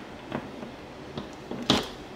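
Hand wire strippers squeezed onto an extension cord's outer jacket to score it: a few faint clicks, then one sharper click near the end.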